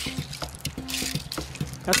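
Shallow creek water trickling, with scattered small clicks of wet stones as rocks are picked out of a water-filled metal gold pan by hand.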